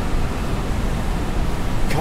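Steady, low rushing noise with no distinct events.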